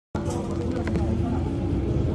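Inside a moving EMT Madrid city bus: the engine runs with a steady low rumble and a constant hum, with light rattles from the cabin.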